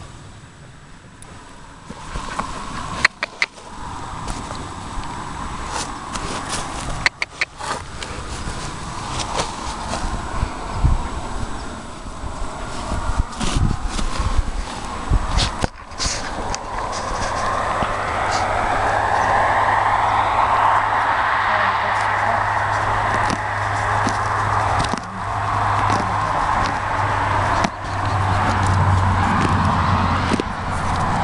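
An engine running steadily, coming in about halfway through and staying, with scattered sharp clicks and knocks before it.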